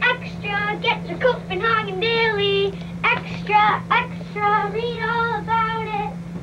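Children singing a song, some notes held for about a second, over a steady low hum.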